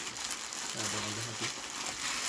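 Plastic food packaging and a shopping bag rustling and crinkling as grocery packets are handled and packed, with a brief hum from a voice about a second in.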